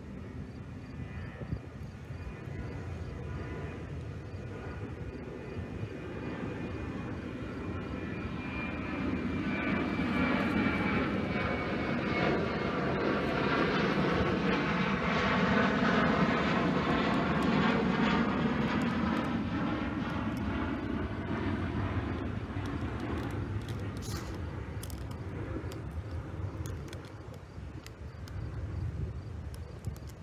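Jet airliner flying past: its engine noise builds over several seconds, peaks about midway, then fades away, with a high whine that slowly falls in pitch as it approaches.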